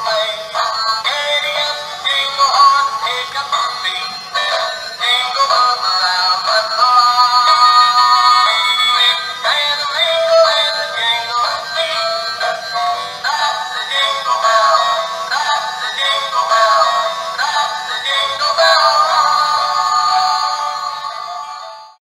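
A battery-powered dancing Christmas tree toy playing a Christmas song with a singing voice through its small built-in speaker. The sound is tinny, with no bass, and fades out near the end.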